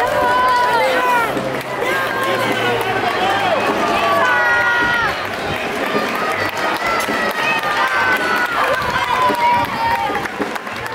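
A dense street crowd's voices, many people calling out and shouting at once, with high-pitched voices standing out over a steady crowd din.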